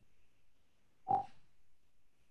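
Discord new-message notification: a single short blip with one clear tone, about a second in, over faint steady hiss.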